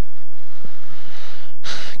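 Faint steady hiss, then near the end a sharp intake of breath by the commentator just before he speaks.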